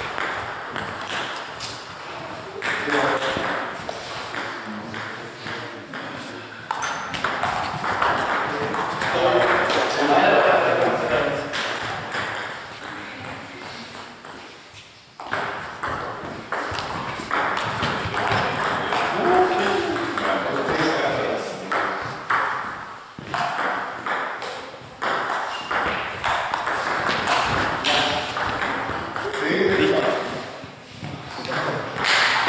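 Table tennis ball clicking sharply off bats and the table in rallies, with people's voices in the hall.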